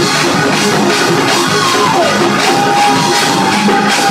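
Loud live gospel praise-break music: fast, steady drumming under held keyboard notes that slide in pitch.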